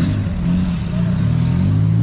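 Engine of a motor vehicle driving past close by in street traffic: a low, loud hum whose pitch rises slightly in the second half.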